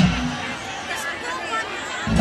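Festival crowd voices, a mix of talk and calls from many people.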